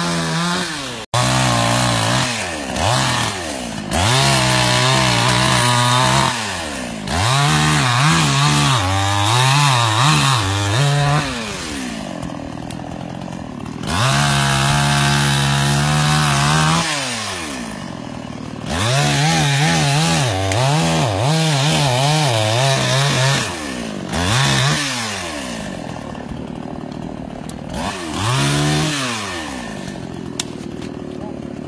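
Two-stroke chainsaw cutting fallen trees and branches, revving in repeated bursts of a few seconds. Its pitch rises and wavers under load, then slides back down to idle between cuts.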